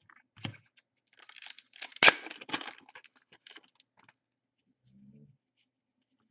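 Foil trading-card pack being torn open by hand: crinkling and ripping of the wrapper, with the sharpest rip about two seconds in, then a few smaller crackles.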